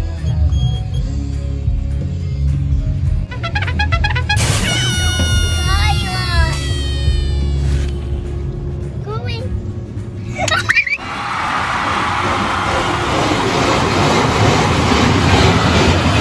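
Music for about the first eleven seconds, with a falling melodic phrase near the middle. It cuts off suddenly and is followed by the steady hiss of an automatic car wash's high-pressure water jets spraying the car.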